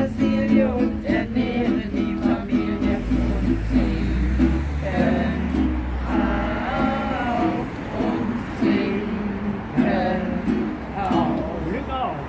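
Acoustic guitar strummed in a regular rhythm under a small group of voices singing held notes.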